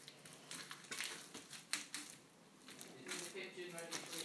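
Faint squishing and crackling of black floam slime, sticky slime packed with foam beads, being pressed and kneaded by hand, with a scatter of small pops and clicks.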